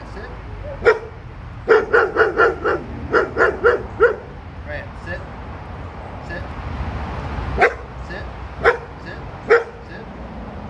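A dog barking in short, sharp barks: a single bark, then two quick runs of four or five barks, and three spaced barks near the end.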